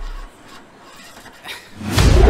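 Film sound design: a deep rumble dies away, leaving a quiet stretch with faint rustling and a small click. Near the end a whoosh swells up into a loud, deep boom.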